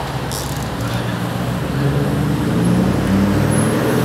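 Road traffic: a motor vehicle's engine running low as it passes, a little louder in the second half.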